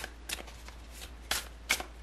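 A tarot deck being shuffled in the hands: about four crisp card snaps and slaps, the loudest near the end.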